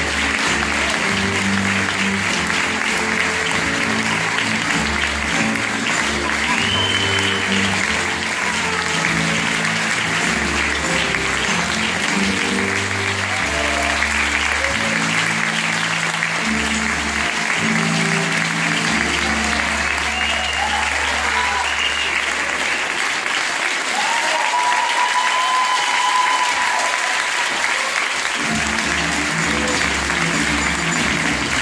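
Theatre audience applauding steadily, with music playing underneath. The music drops out for a few seconds near the end while the applause carries on.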